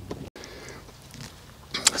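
Faint, even outdoor background hiss with no distinct event, cut by a moment of dead silence about a third of a second in; a man's voice starts just at the end.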